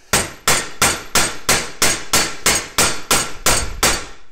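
A steady run of about a dozen claw-hammer blows, about three a second, on mineral-insulated copper-clad (pyro) cable lying on a steel vice anvil, each blow ringing briefly. The blows are flattening the cable until it breaks down into a dead short between its conductors.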